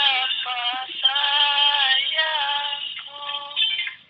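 A high-pitched singing voice in short phrases with wavering, bending notes, as in a dangdut song. It sounds thin, with no bass.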